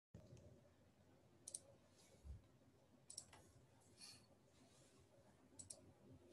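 Near silence with faint, short clicks at a computer, coming in pairs about a second and a half in, about three seconds in, and near the end.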